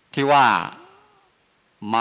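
Only speech: a man speaking Thai into a microphone, a short drawn-out phrase, a pause of about a second, then speech again near the end.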